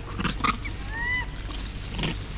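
Macaque monkeys calling: a few short, high calls that rise and then fall in pitch, about a second in. A brief rustle or knock about half a second in is the loudest sound.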